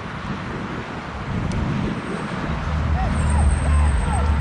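Outdoor ambience on a football pitch during play: a steady low rumble that grows louder in the second half, with a few faint shouted calls from players near the end.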